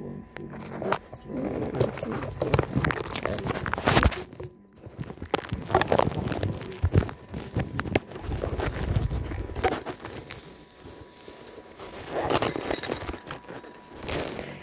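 Close rustling and crinkling handling noise with scattered sharp clicks and knocks, over a faint steady tone.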